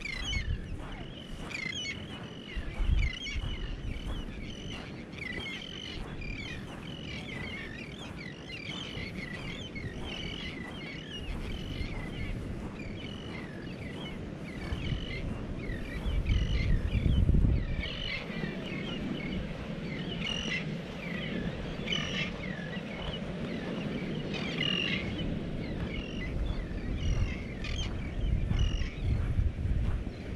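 Many birds chirping and calling steadily, a dense chorus of short high calls. Low gusts of wind buffet the microphone about three seconds in and most strongly about halfway through.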